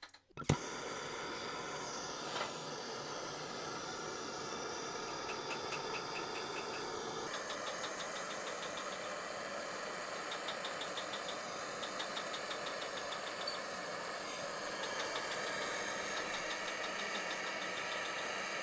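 Jeweller's soldering torch flame hissing steadily as it heats the end of a gold tube; a sharp click about half a second in as the noise begins, and the hiss grows louder about seven seconds in.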